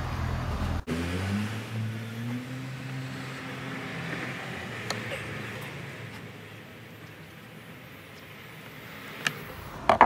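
A passing road vehicle's engine hum, rising slightly in pitch and fading away over the first few seconds after a brief dropout, then steady outdoor background noise with a couple of faint clicks.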